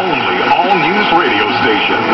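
A radio announcer's voice playing through the speaker of a 1975 Chevrolet Nova AM-FM mono car radio as it receives a broadcast station, with steady whistle tones under the voice.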